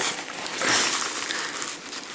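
Kitchen roll (paper towel) being handled and crumpled in the fingers, a papery rustle that swells and fades within the first second or so.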